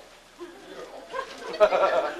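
Audience laughter that swells up about a second in and is loudest near the end.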